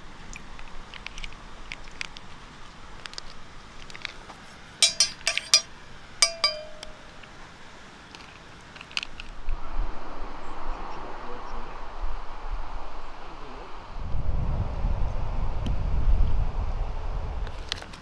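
A few sharp metallic clinks with a short ring, about five to six and a half seconds in, from metal knocking against an enamel camping mug. From about ten seconds in comes a steady hiss of wind, which turns into a low rumble of wind on the microphone over the last four seconds.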